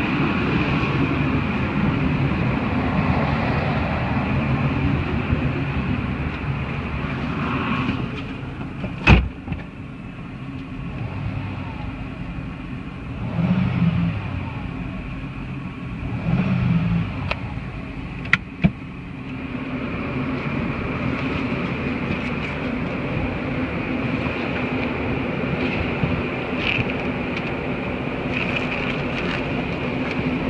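Ford Escape 3.0 L V6 engine running steadily at idle. About nine seconds in a car door shuts with a loud click and the engine becomes muffled, as if heard from inside the cab; two short rises in engine sound follow. Near nineteen seconds two latch clicks come and the engine is heard more loudly again.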